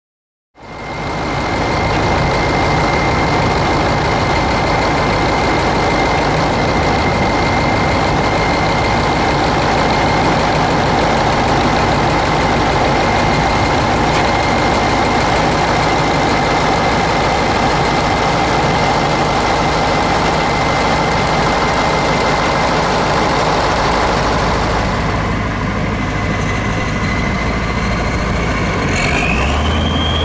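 Kirovets K-700A tractor's YaMZ-238NB V8 diesel engine running steadily, with a steady high whine over the engine noise. Near the end the whine rises in pitch as the engine speeds up.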